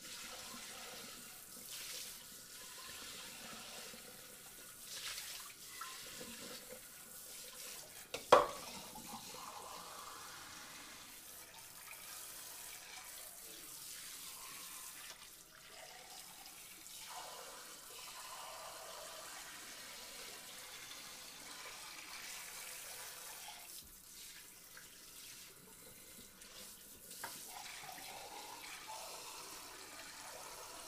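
Water running and splashing steadily into standing water, bubbling at the surface. One sharp knock about eight seconds in stands out above it.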